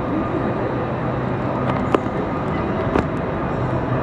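Railway station platform ambience under an arched train-shed roof: a steady low hum from the trains standing at the platforms, with background voices and a couple of sharp clicks about two and three seconds in.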